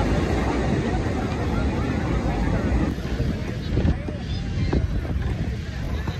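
Indistinct voices of people over a steady low rumble.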